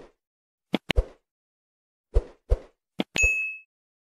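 Click-and-pop sound effects of an animated subscribe-button overlay: several short pops, some in quick pairs, as the cursor clicks the buttons, ending about three seconds in with a brief ring like a small bell.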